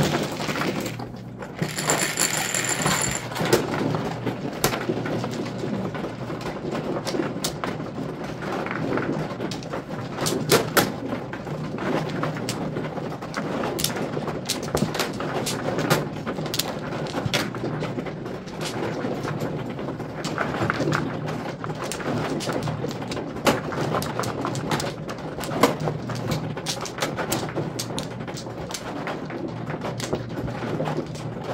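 Mahjong tiles clicking and clacking against each other and the table as players push, draw and line up their tiles, many sharp clicks throughout. A brief high beep about two seconds in.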